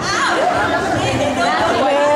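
Chatter: several people talking at once, one voice high-pitched.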